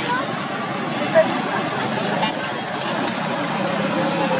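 Steady outdoor background noise with indistinct voices and a brief high squeak about a second in.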